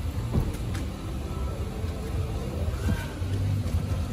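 Low steady rumble of an idling car engine, with a couple of faint knocks.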